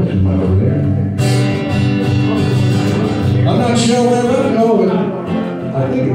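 Steel-string acoustic guitar strummed in a steady country-folk rhythm, with a harder, brighter strum about a second in.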